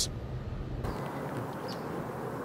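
Quiet outdoor background noise. A low street hum switches abruptly, a little under a second in, to a steady hiss with a faint high chirp.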